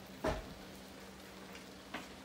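Chili sizzling faintly in a wok on a gas burner, over a steady low hum. There is a dull knock about a quarter second in and a light click near the end.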